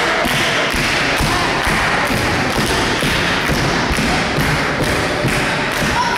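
Steady rhythmic thumping, about two beats a second, over a loud continuous din.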